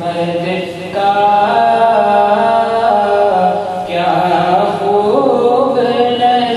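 A man's voice singing a naat, an Urdu devotional poem in praise of the Prophet Muhammad, in long held melodic notes that shift pitch about a second in and again near four and five seconds, over a steady low drone.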